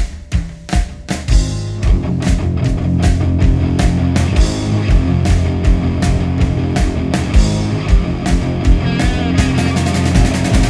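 A rock band playing. A drum kit plays alone at first, and about a second in the full band joins over a steady drum beat.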